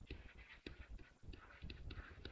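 Faint, irregular taps and light scratches of a pen stylus writing a word on a tablet PC screen.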